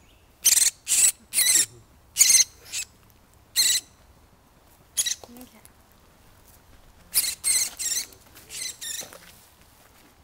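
Downy woodpecker held in the hand giving loud, high-pitched calls in short bursts: a run of three in the first two seconds, single calls spaced out after that, then another run of three or four starting about seven seconds in.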